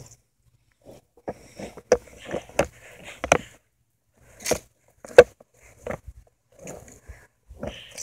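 Kryptonics cruiser skateboard rolling over asphalt through a manual, with a string of irregular knocks and clacks from the board and wheels. The loudest is a sharp clack about five seconds in.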